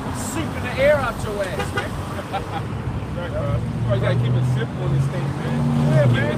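Voices talking, unclear and overlapping, with a steady low engine hum, like a vehicle idling or passing, coming in about halfway and continuing to the end.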